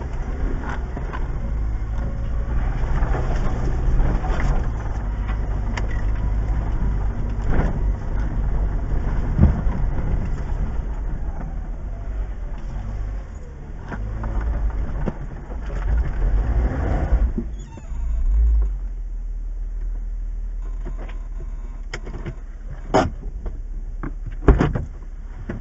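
Jeep Wrangler running at crawling speed over a rough dirt trail, heard from inside the cab: a steady low engine rumble with scattered knocks and rattles as the Jeep rolls over bumps and ruts. After about eighteen seconds it comes to a stop and the sound settles to a steadier, quieter engine hum, with a couple of clicks near the end.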